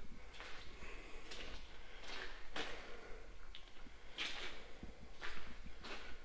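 Faint footsteps and scuffs on a concrete shop floor: about six soft, irregular steps over a low, steady background hum.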